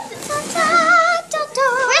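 A high, wavering vocal sound of delight, a drawn-out 'ooh' whose pitch wobbles quickly up and down, running into speech near the end.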